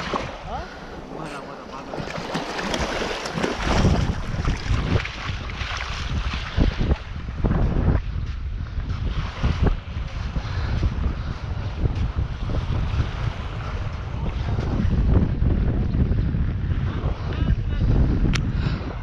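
Wind buffeting the microphone of a body-worn camera in loud, uneven gusts, with small waves washing at the water's edge in the first few seconds.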